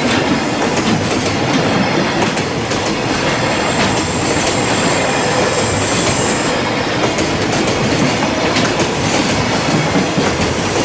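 Freight train of Koki 104 container flat wagons rolling past close by, the wheels clattering steadily over the rail joints. A thin high wheel squeal sounds from about four to six and a half seconds in.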